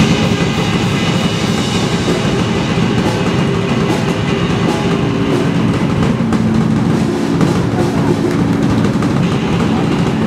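Live instrumental rock band playing: a drum kit with a pounding bass drum, together with electric guitar and bass guitar, loud and continuous.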